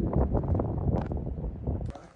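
Wind buffeting a phone's microphone outdoors, an irregular low rumble.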